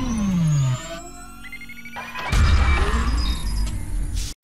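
Cinematic electronic logo-intro sound design. A deep rumble with a tone sliding down in pitch dies away under a second in, then a quieter stretch of thin electronic tones follows. A heavy low boom hits a little past halfway and rumbles on.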